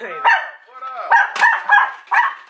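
Pet dogs barking excitedly, a quick run of short, sharp barks.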